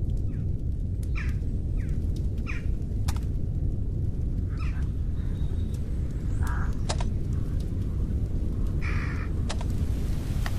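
Short bird calls, crow-like caws, about five times over a steady low rumble, with a few sharp clicks between them.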